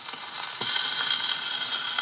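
Steel needle of an HMV acoustic gramophone's soundbox running in the run-in groove of a 78 rpm shellac record: steady surface hiss with crackles and clicks, slowly getting louder, before the music begins.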